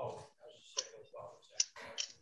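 Faint, indistinct speech in a meeting room, with two short sharp clicks, the first a little under a second in and the second a little past halfway.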